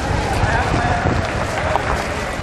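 Outdoor street ambience: indistinct voices of people nearby over a steady low rumble.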